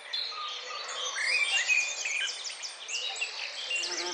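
Several songbirds singing at once, a busy layer of quick, overlapping high chirps and trills. Near the end a low, steady bumblebee buzz starts.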